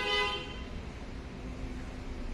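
A vehicle horn sounds once at the very start, a short pitched toot of about half a second, over a steady low background hum.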